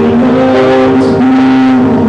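A man singing long held notes into a microphone while accompanying himself on piano.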